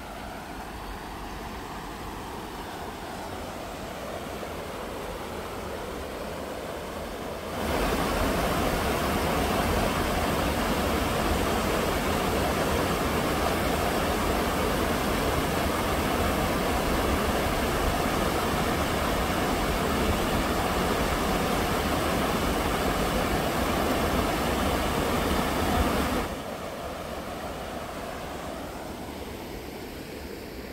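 Rushing water of a river cascading over rocks in a steady, even rush. It jumps abruptly louder about seven seconds in, where the water is heard close up, and drops back to a quieter, more distant rush a few seconds before the end.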